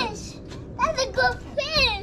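A young child's high-pitched voice: several short, quick exclamations in the second half, with no clear words.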